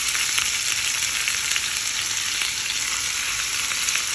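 Bacon-wrapped hot dogs sizzling in a frying pan: a steady crackling hiss.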